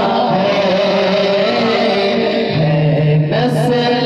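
A man singing a naat, an Urdu devotional song, solo into a handheld microphone, in long held notes that waver. A low steady note joins under the voice about two and a half seconds in.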